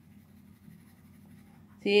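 Faint scratching of a graphite pencil shading on paper.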